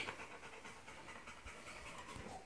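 Blue-nose pit bull panting faintly, tired out after exercise.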